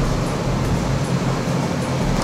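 Steady running noise of a packaging line's conveyor and cup-labeling machine, with a low, even hum.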